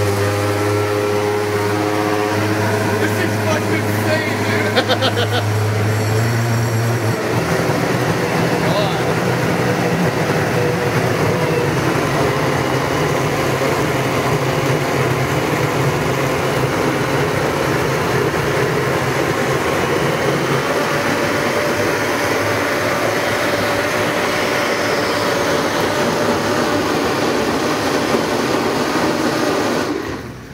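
Blendtec blender motor running loud and steady at high speed, churning a thick mix; about seven seconds in its pitch steps up, and it cuts off suddenly near the end.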